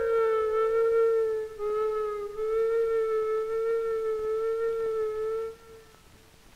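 Solo flute playing a slow line of long held notes that step gently downward, ending on one long note that stops near the end.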